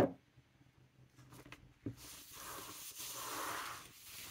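A sharp knock right at the start, then about two seconds of paper rustling as a sheet of paper is lifted and handled.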